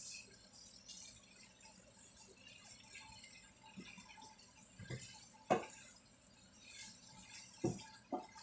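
Fried tofu and potatoes being stirred in a frying pan with a wooden spoon. There is a faint sizzle, with a few sharp knocks of the spoon against the pan; the loudest comes about five and a half seconds in.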